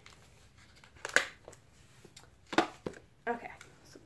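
An eyeshadow palette and its cardboard box being handled and closed: a few sharp clicks and knocks, the loudest about a second in, with light rustling of the packaging.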